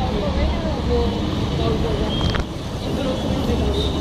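Indistinct voices of several people talking over steady low street noise, with a short high tone and a click about two seconds in.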